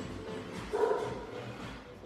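A dog barking in the background of a noisy room, loudest about a second in.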